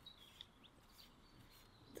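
Near silence, with a few faint, high bird chirps.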